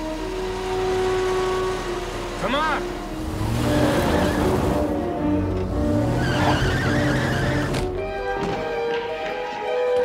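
A large sedan driving past with engine and tyre noise in two surges, and a brief tyre squeal about two and a half seconds in, over a music score; the car sound stops abruptly near the end.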